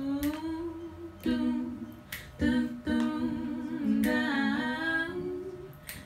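Female a cappella singing without words: sustained hummed notes, often two pitches held together as a harmony, gliding between phrases. Short sharp clicks fall between the phrases.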